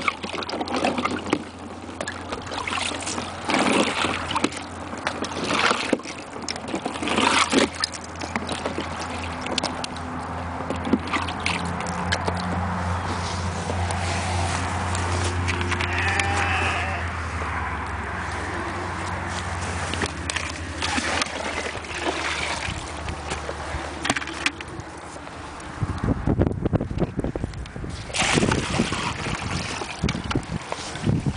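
Slabs of ice being lifted and knocked out of a frozen plastic water tub, a series of sharp knocks and clatters in the first several seconds. A steady low hum runs through the middle, and near the end water is poured from a bucket, splashing into the tub.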